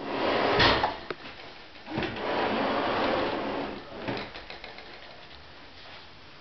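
Wood sliding on wood, like a mahogany drawer being worked in its runners: a short scrape ending in a sharp knock about half a second in, then a longer sliding scrape from about two seconds in, with a few light clicks after it.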